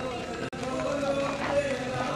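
Men's voices from a walking procession, quieter talk and chanting between louder sung chant lines, with a very short gap in the sound about half a second in.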